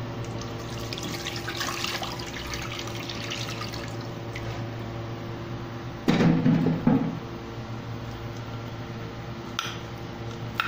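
Water being poured into a granite-coated cooking pot, a steady stream splashing as the pot fills. A louder burst about six seconds in lasts about a second.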